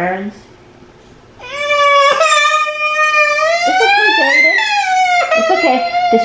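A young boy crying: after a brief sob, a long loud wail begins about a second and a half in, rises in pitch near its end, and breaks into more sobbing. He is crying from the sting of hydrogen peroxide being sprayed on his scraped knee.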